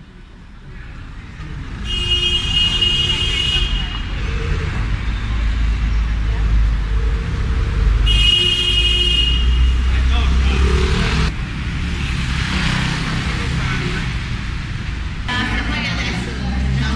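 Road traffic passing on a street: a loud, low engine rumble that builds about two seconds in. Two high, steady whining tones of about two seconds each sound over it, the first a couple of seconds in and the second about eight seconds in.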